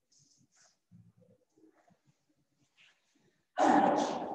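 Faint scattered clicks and rustles, then, near the end, a sudden loud rubbing noise as a marker starts writing on a whiteboard.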